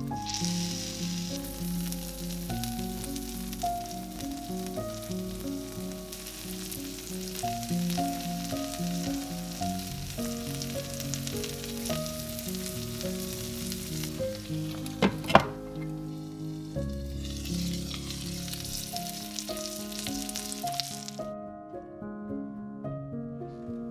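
Egg, tortilla and cheese frying in a covered non-stick pan over medium heat, a steady sizzle under background music. There is a sharp knock about fifteen seconds in. The sizzle cuts off suddenly near the end.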